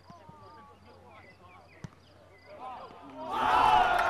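Footballers calling out faintly during a set piece, one sharp kick of the ball about halfway through, then a sudden loud burst of shouting and cheering near the end, the celebration of a goal.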